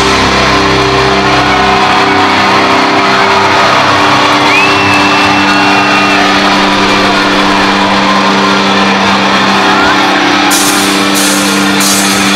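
Rock concert crowd cheering and shouting between songs over a steady held drone of low notes from the stage sound system. The bass of the previous song stops about two seconds in, a short whistle rises out of the crowd near the middle, and bright high-pitched noise comes back near the end.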